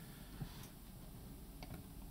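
A few faint computer mouse clicks over low room hiss.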